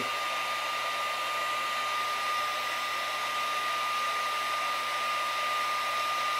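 Small handheld heat gun running on its low setting: a steady blowing hiss with a thin, steady whine.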